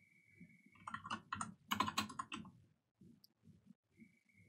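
Typing on a computer keyboard: a quick run of keystrokes starting about a second in and lasting about a second and a half.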